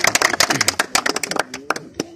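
A small crowd clapping hands in quick, irregular claps, with voices underneath; the clapping thins out and stops shortly before the end.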